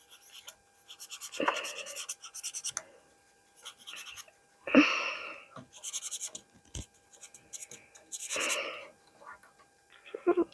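Felt-tip markers scribbling on the crystal-garden tree cutouts: quick runs of short scratchy strokes in several spells, with pauses between.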